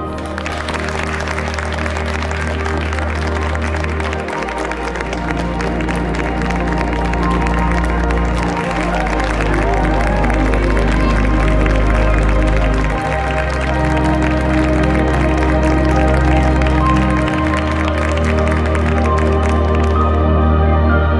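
Background music with long sustained bass notes that change about every four seconds, over a crowd of guests applauding throughout.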